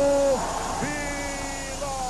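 A voice holding a long drawn-out vowel that ends with a drop about half a second in, then a second long held note at about the same pitch lasting about a second.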